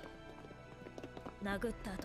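Anime episode soundtrack: soft background music, then a character's voice speaking from about a second and a half in.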